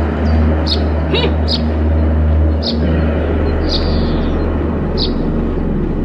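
Small birds giving short high chirps about every second, over a steady low rumble.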